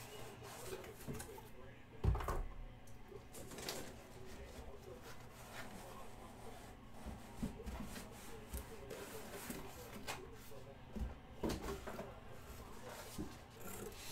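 Handling of a cardboard box and its packaging while a basketball is taken out: scattered knocks and rustles, the loudest knock about two seconds in.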